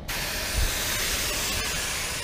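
Compressed air hissing steadily out of a Krone curtainsider trailer's air suspension as it is let down from its raised ride height. The hiss starts suddenly and holds even.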